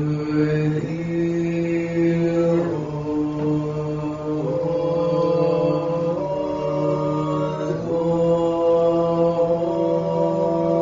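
Men's voices chanting a slow Orthodox church response over a held low drone, the melody moving in long held notes that step to new pitches every second or two.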